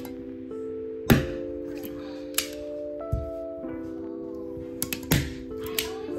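Hand staple gun firing staples through batting into an OSB board: a series of sharp snaps, the loudest about a second in and about five seconds in. Background music with sustained chords plays underneath.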